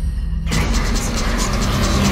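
Horror trailer sound design: a low, steady drone joined about half a second in by a loud, rushing noise swell that fills the whole range with a fine flicker.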